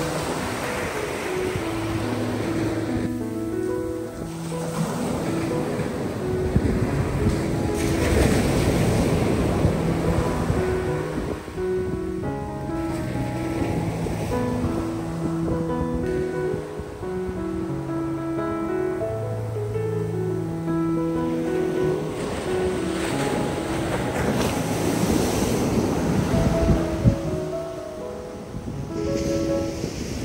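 Surf breaking and washing up a sandy beach, surging and ebbing every few seconds, under soft background music of slow held notes.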